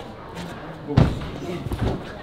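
A climber falling off a bouldering wall and landing on the padded crash-mat floor: one heavy thud about a second in, then a few more thumps near the end as he lands on his feet and steadies himself.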